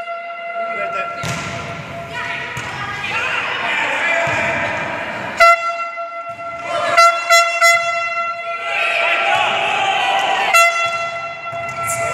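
Volleyball struck in a rally, a handful of sharp slaps echoing in a sports hall, over shouting voices. A horn sounds long steady blasts: one ending about a second in, another about five and a half seconds in, and one from about ten and a half seconds on.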